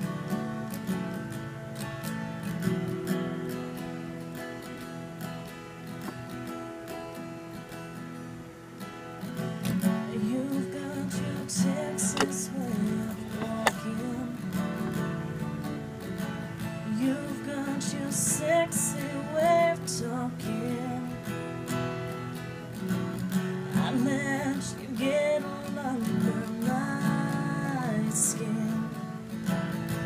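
Acoustic guitar strummed in a steady accompaniment, playing the instrumental part of a country song.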